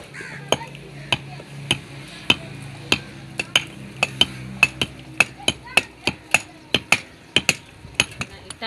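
Two hand hammers chipping old mortar off used fired-clay bricks: sharp, uneven knocks about two or three a second, from two people working at once.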